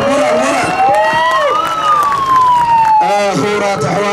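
A siren sounding over the crowd's voices: one tone rises steadily for about a second and a half, then falls, and cuts off suddenly about three seconds in.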